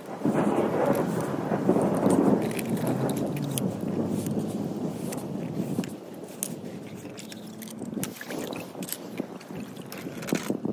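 Small toy cars clicking and rattling against each other as a hand handles them in a wet mesh pool skimmer net, over a rushing rumble that starts suddenly and is loudest in the first few seconds before fading.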